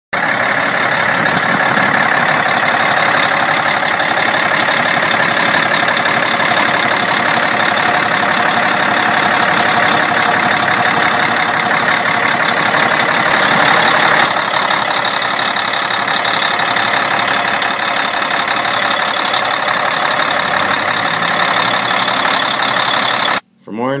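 350-horsepower Caterpillar diesel engine of a 1995 Freightliner FLD112 running steadily at idle, heard close up in the open engine bay. The sound cuts off suddenly near the end.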